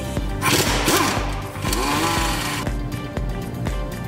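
A power wrench runs for about two seconds, its motor pitch rising and falling as it spins a suspension fastener loose, over background music.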